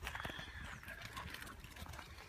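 Faint, irregular footsteps crunching on a wet gravel track, over a low rumble on the microphone.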